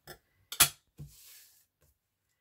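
Scissors snipping the hard edges off a piece of trim: a few sharp clicks, the loudest about halfway through, followed by a brief soft rustle.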